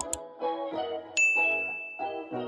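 Bright, single-pitched notification-bell ding sound effect about a second in, ringing on with a slow fade over light piano-like music. Two quick mouse-click sounds come right at the start.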